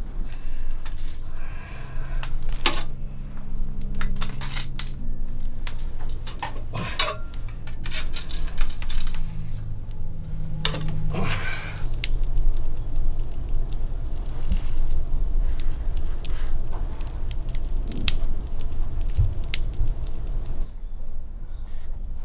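Kitchen work: scattered clinks and knocks of pots, bowls and metal utensils, irregular and sharp, over a low hum.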